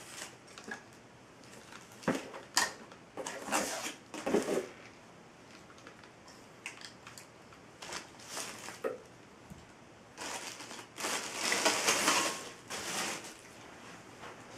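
Handling noise: short rustles and light knocks as LED emergency light units, their cords and plastic packaging are picked up and set down on carpet, with a longer spell of rustling near the end.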